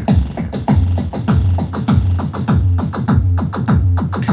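Korg Electribe EMX-1 drum machine playing a looping electronic drum pattern: a quick run of synthesized drum hits, each dropping in pitch, about four a second, over a steady low bass note that comes in about a second in. The synth drum voices are being reshaped live with the oscillator and filter knobs.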